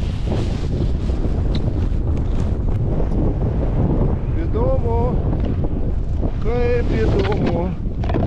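Wind buffeting the microphone while a snowboard slides and scrapes down a snowy slope. A person's voice calls out twice in long wavering tones, about halfway through and near the end.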